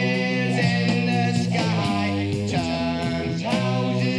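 A hard rock recording from around 1970 playing back, led by electric guitar over steady bass notes.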